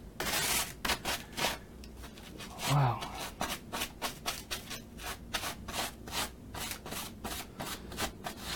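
A paintbrush scrubbing clear coat over the surface of an acrylic painting in quick back-and-forth strokes, about four a second.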